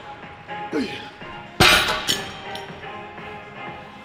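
Metal dumbbells set down with a loud clang about a second and a half in, followed by a couple of lighter clinks, over background rap music.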